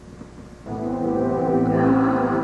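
Background music: a sustained, steady chord comes in suddenly just over half a second in and swells in loudness.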